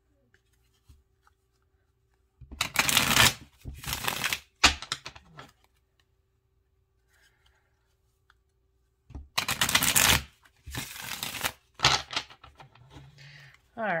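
A tarot deck being shuffled by hand: two bouts of dry, papery card noise, one starting a few seconds in and the other about two-thirds of the way through, each lasting a few seconds.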